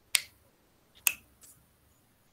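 Two short, sharp clicks about a second apart.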